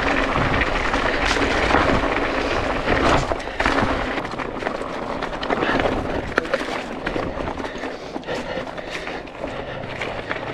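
Mountain bike rolling fast downhill over loose rock and stones: tyre crunch and the rattle and knock of the bike over rocks, with rushing air noise on the camera microphone. Loudest in the first few seconds, easing somewhat later.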